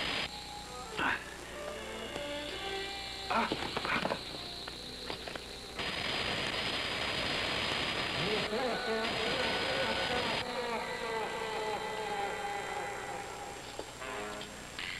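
Sound effects of Alien Baltan firing its electric ray: hissing, crackling blasts near the start and again twice in the second half. Between them runs a buzzing, insect-like warbling cry that rises and falls in pitch.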